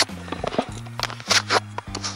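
Background music: sharp percussive hits over a steady low drone.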